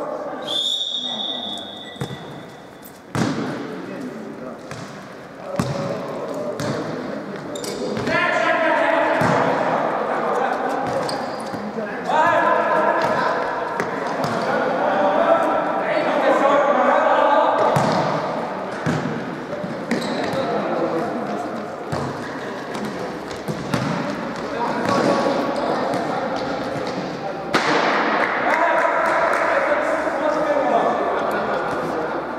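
A referee's whistle blows one steady note of about a second and a half near the start for the kick-off. Then the futsal ball is kicked and bounces off the hard court floor again and again, with players shouting, all echoing in a large sports hall.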